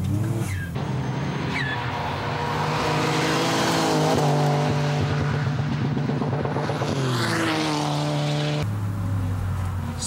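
Twin-turbocharged Toyota Estima minivan's engine being driven hard on a race circuit, its note climbing a few seconds in, holding high, then falling away near the end.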